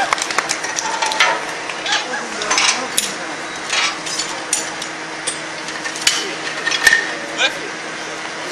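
Metal parts and tools clinking and knocking in quick, irregular strokes as something is rapidly taken apart and put back together, one clink ringing out about six seconds in. Crowd voices run underneath.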